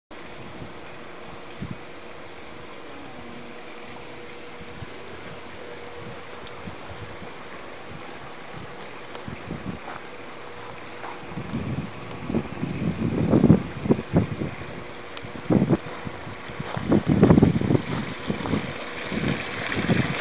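A steady hiss of water running into an above-ground pool from its PVC-pipe waterfall. About halfway through, wind starts buffeting the microphone in loud, uneven gusts.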